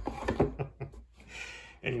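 Cardboard game-box lid being pushed shut by hand over the packed contents: a quick run of knocks and rustles in the first second, then a short sliding hiss as the lid goes down.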